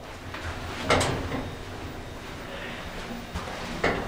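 2007 ThyssenKrupp hydraulic elevator starting its run, heard from inside the cab: a single thump about a second in, then a steady running noise as the car travels.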